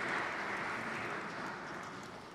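Audience applause in a large hall, a steady even patter that slowly fades away.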